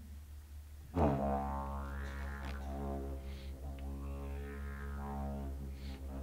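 Didgeridoo starting up about a second in, then a steady low drone with overtones that sweep up and down as the mouth shape changes, the opening of a played rhythm.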